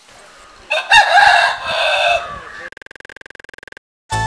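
A rooster crowing once: a single long call that rises, holds and falls away. It is followed by a short, quieter, steady buzz.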